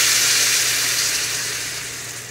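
Hot oil sizzling in a frying pan as spinach paste is poured over fried paneer cubes, the sizzle fading steadily as the paste covers the pan.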